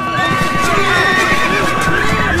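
Horses whinnying, with scattered hoofbeats, over a long held note of background film music.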